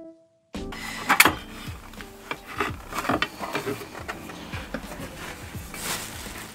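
Handling noise from a motorcycle's stock exhaust silencer being worked loose by hand: irregular metallic clicks, knocks and rubbing, with the sharpest clink about a second in.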